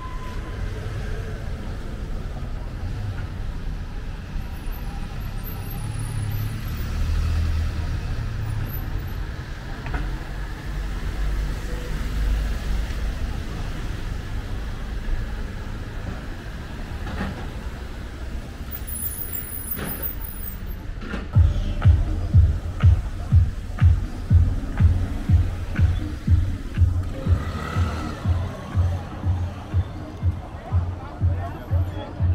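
Street ambience with the low rumble of vehicle engines and traffic, then, about two-thirds of the way in, music with a steady bass beat at about two beats a second.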